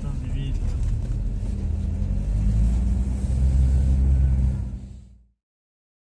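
Minibus engine and road noise heard from inside the cabin, a steady low drone that fades out to silence about five seconds in.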